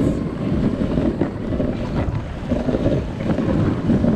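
Dog sled running along a snowy trail behind its team: a steady low noise of the runners over the snow, with wind buffeting the camera microphone.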